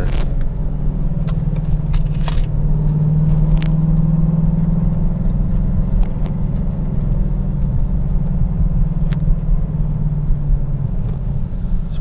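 Hennessey HPE850-tuned Dodge Challenger Hellcat's supercharged 6.2-litre Hemi V8 running steadily at low speed with its exhaust cutouts open, a deep, even engine sound heard from inside the cabin. A few faint clicks sound over it.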